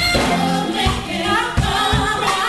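A woman singing live into a handheld microphone over a band with drums.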